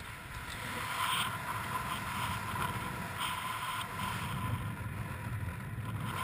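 Wind rushing over the microphone of a camera worn by a skydiver descending under an open parachute canopy: a steady rush that swells a little now and then.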